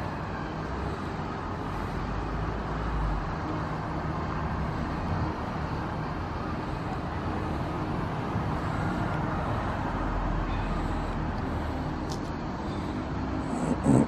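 Steady outdoor background of distant road traffic, with a low rumble swelling twice.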